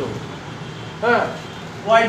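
A man's speaking voice: one short word about a second in, then speech starting again near the end, over a steady low background noise.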